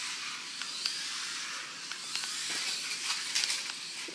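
Small electric drive motors of an Air Hogs Hyperactives remote-control stunt car running, a steady high whir.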